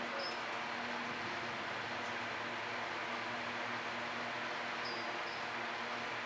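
Steady background hiss with a faint low hum, and a few faint clicks just after the start and again around five seconds in.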